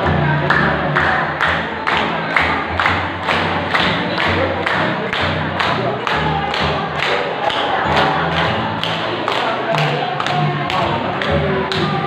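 Music with a steady, quick beat and a bass line.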